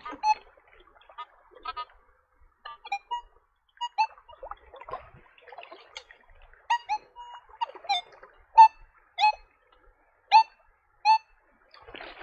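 Nokta Legend metal detector giving short target beeps from its built-in speaker as the coil sweeps underwater. More than a dozen brief chirps of shifting pitch, the loudest in the last few seconds.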